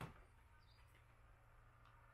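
Near silence: faint steady room hum, with one short click right at the start and a faint high chirp a little under a second in.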